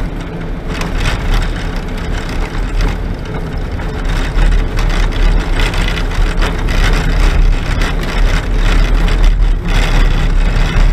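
Vehicle cabin noise while driving on a sandy dirt road: engine and tyre noise with a deep rumble and frequent knocks and rattles from the rough track. It gets louder about four seconds in.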